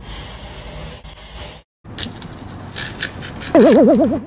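Paintbrush bristles sweeping paint across a wooden board in a steady swishing stroke, which cuts off after about a second and a half. A run of sharp clicks follows. Near the end comes a loud, fast-wavering tone lasting about half a second.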